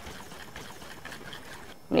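Faint swishing of liquid as a stoppered glass Erlenmeyer flask of vanadium solution is swirled over zinc amalgam, under a low steady hiss.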